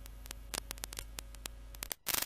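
Faint steady low hum under scattered clicks and crackle, cutting out for a moment near the end.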